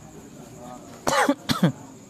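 A man clearing his throat: three short voiced bursts in quick succession, starting about a second in.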